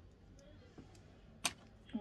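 Quiet room tone, broken by one sharp click about one and a half seconds in, with a fainter tick just before it.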